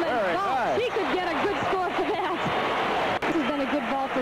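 A voice speaking over steady background noise, likely an untranscribed commentator. About three seconds in there is a brief dropout with a sharp click.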